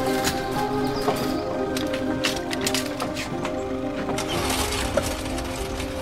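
Sustained chord of drama background music held throughout, with scattered metallic clicks and clinks of an ambulance stretcher being loaded.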